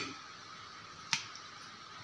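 Faint room tone with a single sharp click about a second in.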